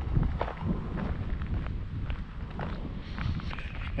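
Footsteps on bare dirt ground, a few soft irregular steps, over a steady low rumble of wind on the microphone.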